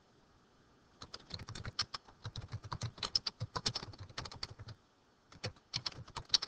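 Typing on a computer keyboard: rapid runs of keystrokes that start about a second in, pause briefly past the middle, and resume near the end.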